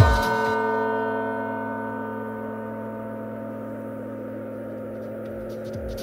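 Breakdown in an electro house mix: the drums drop out and a single struck chord of several notes rings on, slowly fading. The beat comes back in at the very end.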